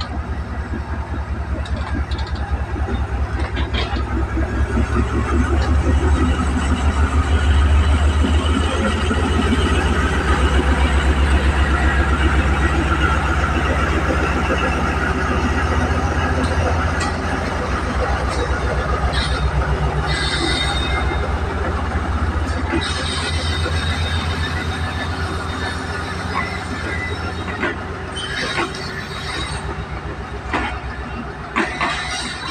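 Pakistan Railways diesel-electric locomotive pulling out and passing close, its engine's deep rumble building and then easing as it goes by. The coaches follow, with wheel clicks over rail joints and brief wheel squeals in the second half.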